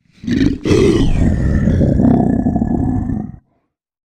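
A deep, rough creature roar sound effect: a short opening burst, a brief break, then one long roar of nearly three seconds that cuts off abruptly.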